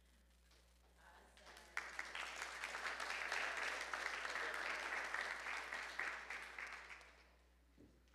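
A congregation applauding. Starts about a second in, is full from just under two seconds, then dies away near the end.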